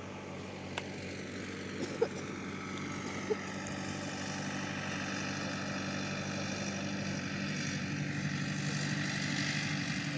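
A motor engine running steadily, its hum slowly growing louder. A few sharp clicks come in the first few seconds, the loudest about two seconds in.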